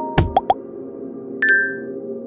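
Logo intro jingle: a steady music bed with a few quick pitched plopping pops in the first half second, then a bright ringing chime about one and a half seconds in that fades away.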